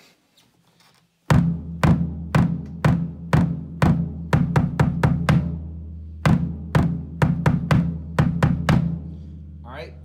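A DW bass drum (kick drum) played with its foot pedal: strokes at about two a second, then quicker runs of strokes, with a low boom ringing under them. The strokes stop shortly before the end and the boom dies away.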